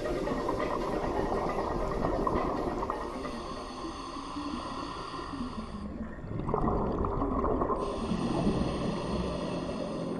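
Muffled underwater sound of scuba diving: a noisy wash with hissing and bubbling from the divers' regulators. The sound shifts abruptly about six seconds in and again about eight seconds in.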